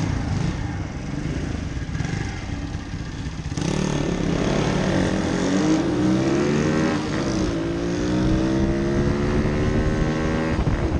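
Small pit bike engine heard from on board. It runs at an even pace at first, then about a third of the way in opens up and accelerates through the gears: the pitch climbs, drops back at two upshifts, and climbs again.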